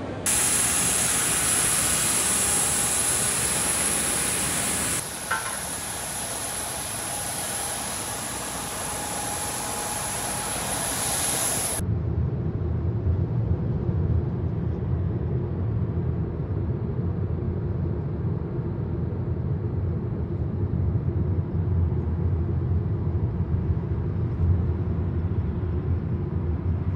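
A loud, even hiss with a thin high whine, like the noise inside a jet airliner's cabin, runs for about twelve seconds. It cuts abruptly to the low, steady rumble of engine and road noise inside a moving car.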